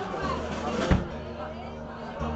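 Voices in a bar between songs over low, sustained guitar notes that step from one pitch to another, with one sharp knock just before a second in.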